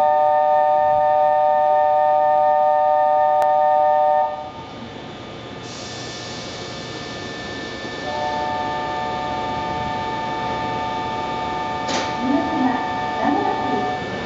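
A railway platform's electronic departure signal sounds a steady chord of several tones and stops about four seconds in. A quieter steady tone starts about eight seconds in, with a hiss shortly before it and a click and voices near the end.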